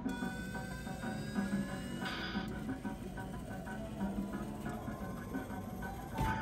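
Electronic music from a claw crane game machine while its claw is being operated, with a slow rising whine and a short hiss of noise about two seconds in.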